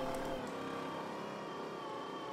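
Boston Dynamics LS3 robot's gasoline engine running with a steady drone and whine, powering its legs as the fallen robot gets itself back up off its side.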